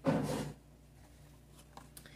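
A short rustle of a plastic toy package being handled, lasting about half a second at the start, followed by quiet with a faint tick near the end.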